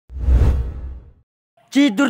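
A whoosh sound effect with a deep low rumble underneath, swelling up and fading away over about a second.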